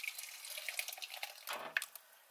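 Thick blended chile sauce pouring from a blender jar into a mesh strainer over a metal pot, a wet, dribbling splatter with small drips.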